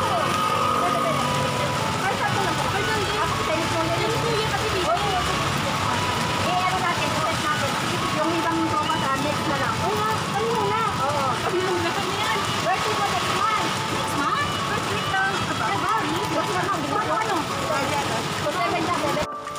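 Several people chatting at once, their voices overlapping with no one voice standing out, over a steady background hiss.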